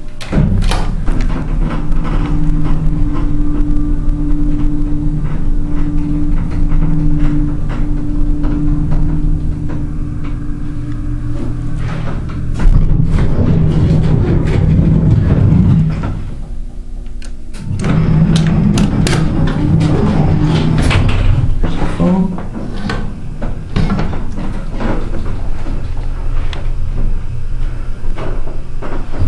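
Passenger elevator running: a steady low hum with a higher tone above it, dropping away briefly about two-thirds of the way in before resuming, with scattered clicks and knocks.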